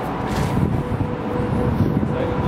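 Steady low rumble of distant city traffic, with a faint constant hum running through it.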